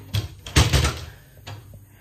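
A door knocking and rattling: one sharp knock, then a loud quick cluster of knocks about half a second in, and a lighter knock in the middle.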